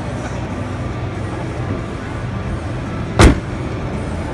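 A car bonnet slammed shut once, a single sharp loud bang about three seconds in, over a steady din of exhibition-hall noise.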